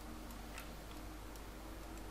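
A few faint, scattered computer mouse clicks over a steady low electrical hum and hiss.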